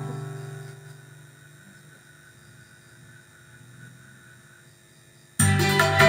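Korg arranger keyboard: a held chord fades away over the first second or two and leaves a quiet pause. About five seconds in, the keyboard comes back in suddenly and loudly with full accompaniment and a drum beat.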